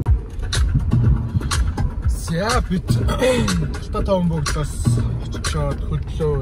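Low steady rumble of a car driving, heard from inside the cabin, with a voice and music over it; from about two seconds in the voice slides up and down in pitch like singing.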